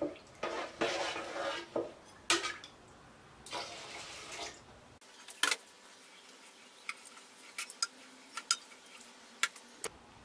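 Metal spoon stirring glutinous rice and coconut milk in a rice cooker's inner pot: swishing of liquid with the spoon scraping against the pot, then a run of light clicks and taps in the second half.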